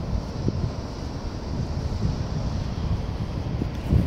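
Wind on the microphone: a steady low rumble with a thinner hiss above it.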